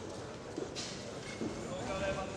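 Boxing-hall crowd and corners shouting in short calls over a steady murmur, with the boxers' footwork patting on the ring canvas; a brief sharp hit about three-quarters of a second in.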